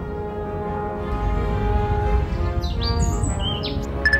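Background music, with a few quick high bird chirps near the end.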